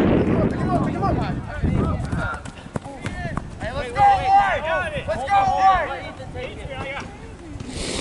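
Men's voices shouting across a soccer field, words unclear, loudest about four to six seconds in, over a low rushing noise in the first couple of seconds.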